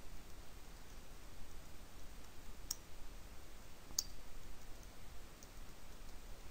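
Faint, scattered clicks of a computer keyboard being typed on, two of them a little louder around the middle, over a low steady hiss.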